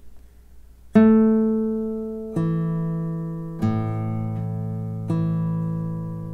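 Classical guitar (a 2017 Masaki Sakurai) with nylon strings, plucked one note at a time: four slow notes starting about a second in, roughly a second and a half apart, each left ringing into the next. The first note is the loudest.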